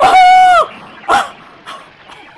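A loud, high-pitched scream held for about half a second, its pitch dropping as it ends, then a shorter second yelp a little after a second in.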